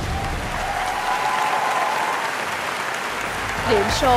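Studio audience applauding.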